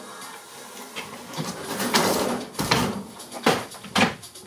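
Handling noise from a sheet-steel ceiling panel being pushed up and fitted overhead: rough scraping and rattling of the metal, with a few sharp knocks in the second half.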